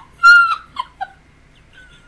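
A woman's short, loud, high-pitched squeal of laughter, followed by a couple of faint catches of breath.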